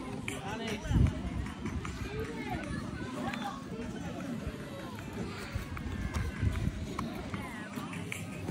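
Indistinct voices of people talking in the background, with low rumbling bumps of wind or handling on the microphone, the loudest about a second in.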